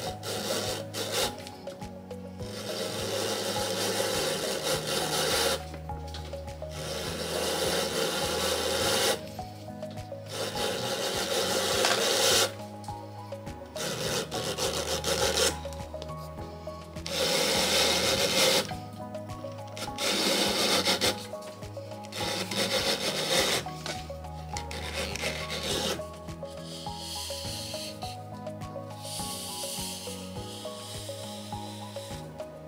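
Leather strip being drawn through a hand pull-through leather splitter, the blade shaving it thinner with a rasping scrape. It comes in repeated pulls of one to three seconds each, with short pauses between them.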